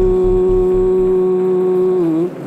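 A singer holding one long, steady note in an indigenous chant, over a low pulsing beat, about four pulses a second, that stops about a second in.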